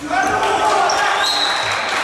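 Players shouting loudly in an echoing indoor sports hall. The shouting breaks out suddenly and carries on, with a ball thudding on the floor underneath.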